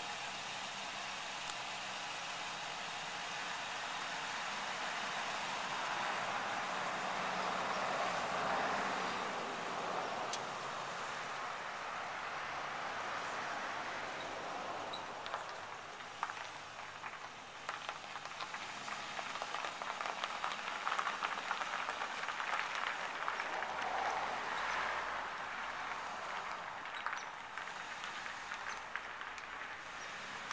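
Ford Crown Victoria police car's V8 engine and tyres as it pulls slowly away down a driveway, a low steady noise that swells twice.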